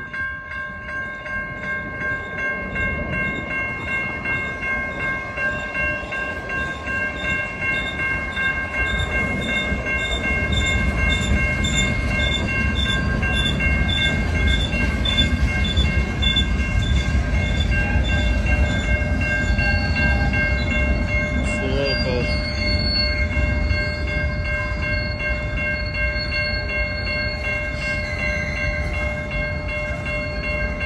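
Railroad crossing bell ringing steadily and repeatedly while a freight train of boxcars rolls through the crossing, its low rumble growing louder about ten seconds in, with a brief squeal around two-thirds of the way through.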